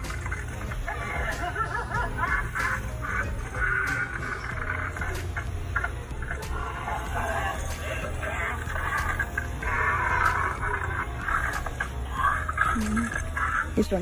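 Background music and indistinct, murmuring voices over a steady low hum, with scattered faint clicks.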